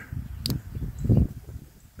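Push-button automatic folding knife springing open: one sharp click about half a second in as the blade snaps out, followed by low rumbling handling noise.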